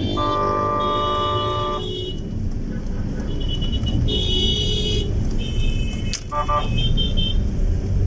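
Car interior road and engine rumble while driving in traffic, with vehicle horns sounding: one long honk in the first two seconds, then several shorter, higher toots and beeps.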